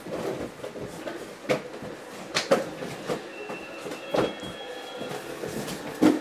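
Handling noise of cardboard boxes and packaging on a table: rustling with a few sharp knocks and taps, about four in all.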